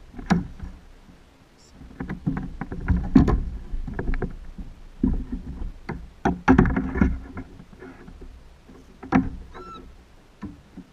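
Irregular knocks, clicks and low thumps of gear and body shifting on a kayak as an angler reels and pumps a bent fishing rod against a fish, loudest about three seconds in and again around six to seven seconds. A brief squeak comes near the end.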